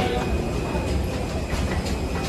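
A steady low rumble with a light rolling clatter, the sound of passengers walking and pulling wheeled luggage over the floor of an airport boarding bridge.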